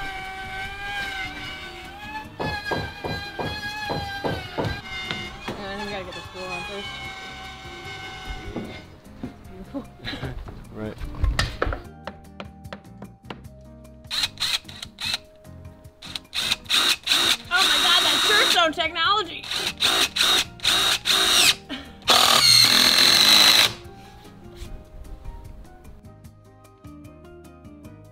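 Background music with a singing voice, followed by construction work sounds: scattered knocks and then several loud bursts of a power tool running, the last two being the longest and loudest.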